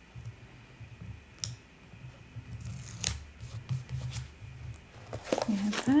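Paper handling: a planner sticker is rubbed and pressed down onto the page, with light rustling and a couple of sharp clicks, then the pages of the spiral-bound planner are turned. A voice starts speaking near the end.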